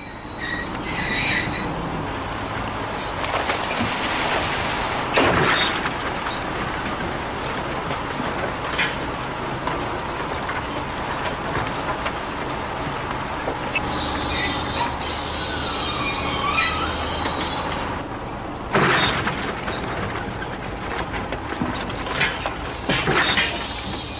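Dragline excavator at work: a steady mechanical drone of its engine and winches, with high metallic squeals about two-thirds through and several loud clanks of the bucket and chains, the strongest about five seconds in and again just past the middle.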